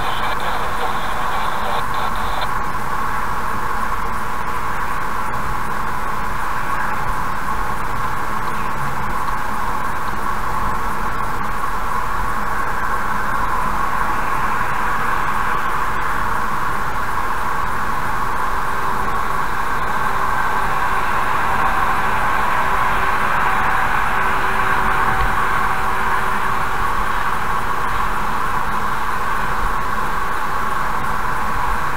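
Steady road and tyre noise of a car cruising at highway speed, heard from inside the cabin through a dashcam microphone.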